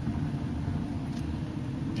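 Steady low rumble of a vehicle driving slowly on a gravel road, heard from inside the cabin: engine and tyre noise.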